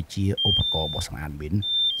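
Handheld landmine detector sounding two short electronic alert beeps, each a pair of notes: the first, about a third of a second in, steps up in pitch, and the second, near the end, steps down. A man speaks over them.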